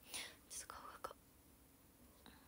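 A woman whispering: a few short, breathy, hushed sounds in the first second or so, then quiet room tone.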